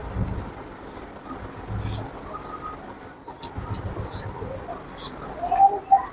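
A person chewing and eating with wet smacking clicks of the lips and tongue and a few low thuds. Near the end comes a brief voiced hum, the loudest sound.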